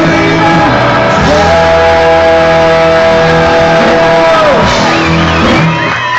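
Ska-punk band playing live and loud, heard from inside the crowd, with one long held note that bends down and drops away shortly before the end. Near the end the band thins out as the song finishes.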